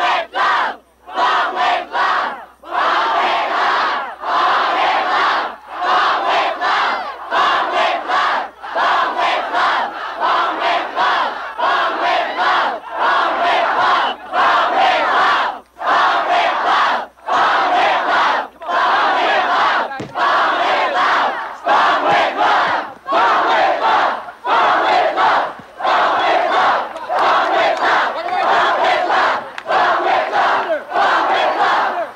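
A large crowd shouting a chant in unison, most likely 'bomb', over and over. Each loud group shout is followed by a brief break, roughly once a second.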